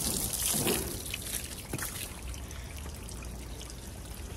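Hose spraying water against a car's side panel. The spray drops off about a second in, leaving quieter trickling and dripping.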